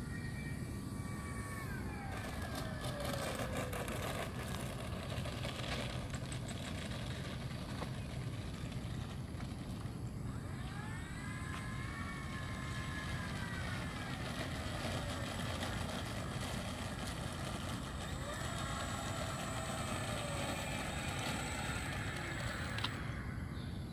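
Electric motor and propeller of a radio-controlled LA-7 warbird model. Its whine falls steeply in pitch about two seconds in, rises and falls again in a long swell near the middle as it taxis, and holds steadier near the end, over a steady low rumble.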